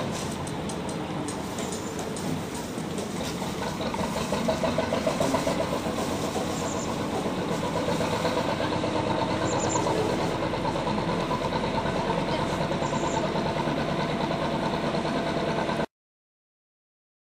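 Working narrowboat's diesel engine running steadily at slow revs with an even beat as the boat moves along the canal. The sound cuts off suddenly near the end.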